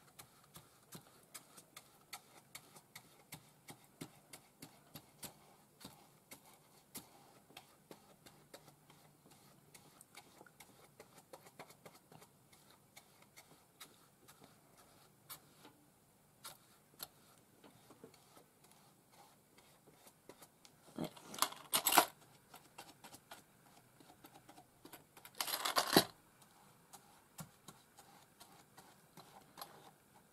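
A paintbrush working acrylic paint onto a cardboard suitcase: a run of faint taps, about two a second, with two louder scratchy brush strokes about two-thirds of the way through.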